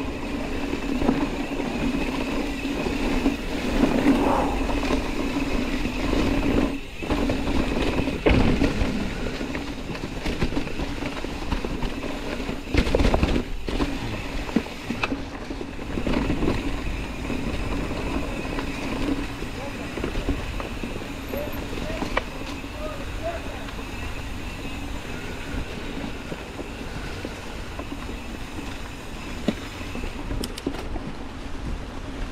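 Mountain bike rolling down a leaf-covered dirt trail: tyres running through dry leaves, wind on the camera, and the bike knocking and rattling over bumps. A steady buzzing hum runs under it, typical of an Industry Nine rear hub freewheeling while the rider coasts.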